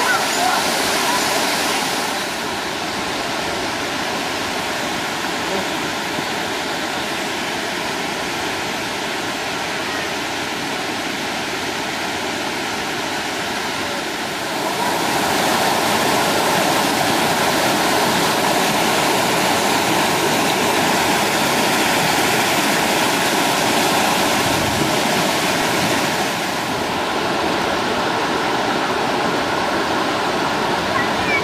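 Waterfall: a steady rush of falling water that grows louder about halfway through and eases a little shortly before the end.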